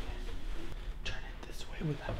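Hushed whispering voices, ending in a short spoken word near the end.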